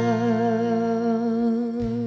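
A woman's voice holding one long sung note with a gentle vibrato, over a sustained acoustic guitar accompaniment.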